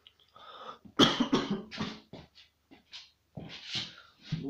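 A man coughing several times in a row, the loudest coughs coming about a second in, followed by a few softer coughs near the end.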